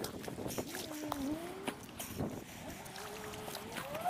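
A metal detector's audio tone wavering up and down in pitch, over short clicks and scrapes of a long-handled metal scoop digging in wet beach sand.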